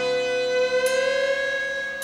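Electric guitar holding one long lead note that bends slightly upward about a second in, then slowly fades.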